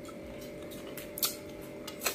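Close-miked eating sounds: a few short, sharp wet clicks of lips and mouth as food is taken from the fingers, the loudest about a second and a quarter in.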